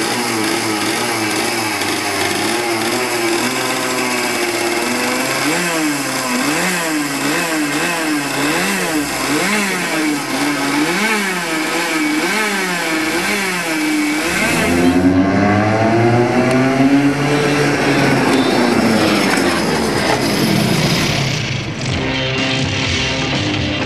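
Two-stroke racing kart engine running and being revved in short blips about once a second, then one longer rise and fall in revs near the end.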